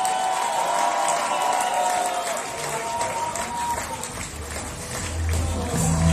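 A hall crowd applauding and cheering over a wrestler's entrance music, with held tones for the first few seconds and a deep bass coming in about four seconds in.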